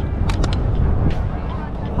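Outdoor city ambience: a steady low rumble of wind on the microphone and distant traffic, with nearby people's voices.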